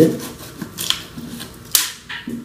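A knife blade scraping and slicing along the packing tape of a cardboard box, in short scratchy strokes, with one louder, sharp scrape near the end.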